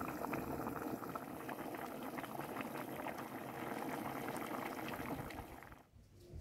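Aluminium pot at a hard, foaming boil on a gas stove: dense bubbling with many small pops. It cuts off suddenly just before the end.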